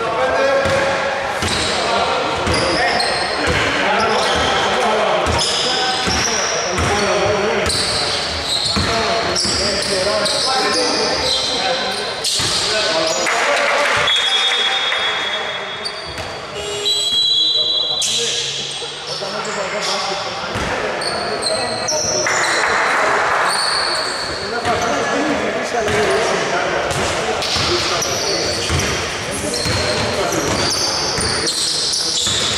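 Indoor basketball game: the ball bouncing on a hardwood court, short high squeaks of sneakers, and players' voices calling out, all echoing in a large hall.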